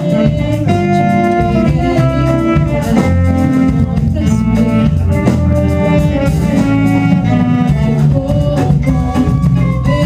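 Small jazz ensemble playing live, with held horn chords over a walking bass line and drums keeping time.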